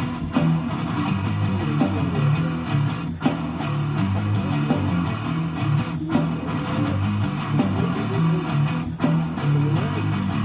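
Guitar music with a steady bass line, playing continuously.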